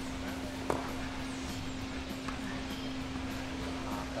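Tennis rally on a clay court: a sharp racket-on-ball hit about three-quarters of a second in, with fainter ball knocks later, over a steady low hum.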